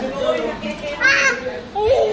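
Young children's voices, with a short high-pitched cry about a second in and a drawn-out rising call near the end.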